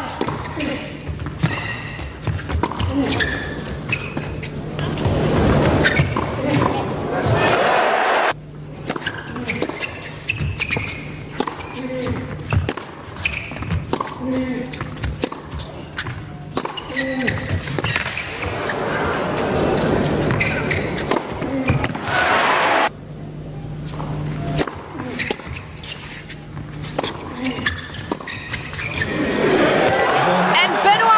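Tennis ball struck back and forth by rackets and bouncing on an indoor hard court, hits following each other at rally pace. Twice a crowd swells into applause and cheering after a point, each time cut off suddenly.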